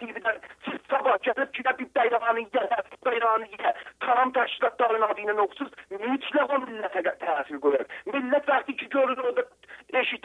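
A person talking continuously over a telephone line, the voice thin and narrow as a phone call sounds, with only brief pauses.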